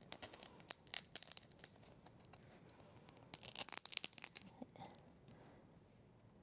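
Chenille-stem-wrapped arms being pushed into a foam-ball body, scraping and crackling against the foam in two short bursts of scratches.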